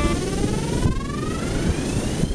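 A synthesizer tone in the background music glides steadily upward in pitch, a rising sweep that leads from one song into the next, over low noise.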